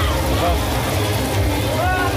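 Heavy rain on a crowded street, with many people shouting and whooping over it in short rising and falling calls, and a steady low rumble underneath.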